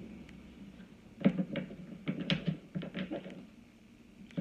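Tarot cards being handled on a table: a quick run of soft taps and slaps, starting about a second in and stopping about a second before the end.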